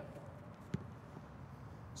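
Faint hall ambience with one short thud about three-quarters of a second in: a football being struck in a shot on goal.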